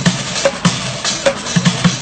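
Bucket drumming: drumsticks beat a fast, syncopated groove on upturned plastic buckets, with deep thuds from the bucket bottoms mixed with sharp cracks.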